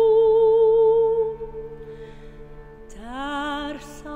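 Soprano voice with a cello ensemble. A long sung note with vibrato fades away a little over a second in, leaving the cellos holding a soft, low, steady chord. Near the end a new note scoops upward into the next phrase.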